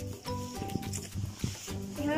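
Background music: short held notes at changing pitches over a steady low beat.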